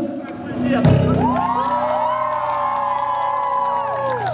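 Several voices holding a long 'woo' call together, each rising, holding and falling away near the end, over a steady low amplifier hum from the stage.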